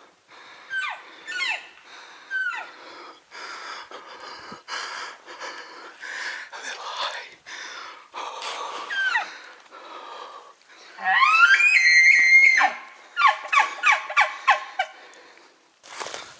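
A bull elk bugling about eleven seconds in: a rising whistle held high, then falling away, followed by a quick string of chuckles. Earlier there are several short falling elk mews.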